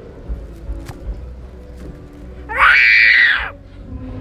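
A single shrill screech, about a second long, rising then falling in pitch around two and a half seconds in: a dinosaur's cry, voiced as a scream.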